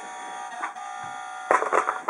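A battery-powered toy fire engine's electronic siren sounding a steady buzzing tone, which cuts off about a second and a half in. A brief, louder burst of noise follows near the end.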